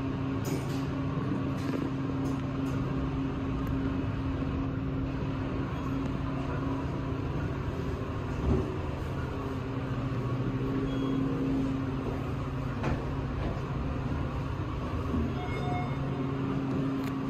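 Otis elevator car running between floors: a steady low hum with one short knock about eight and a half seconds in.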